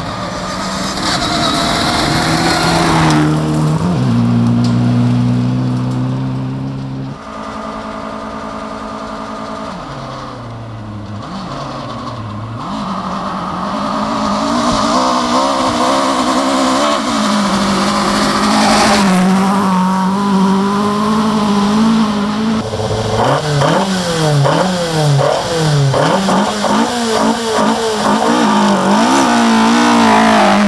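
Rally car engines driven hard on a gravel forest stage, the revs climbing and dropping in steps as gears are changed. In the last several seconds, as a Mk2 Ford Escort approaches, the revs swing up and down rapidly, over and over.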